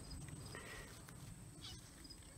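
Faint steady chirring of crickets, with a low faint rumble underneath.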